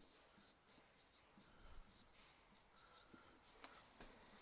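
Faint, quick strokes of a marker writing on a whiteboard.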